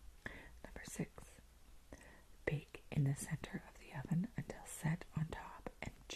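A woman whispering in a soft, breathy voice, with some syllables half-voiced, as she reads a recipe aloud.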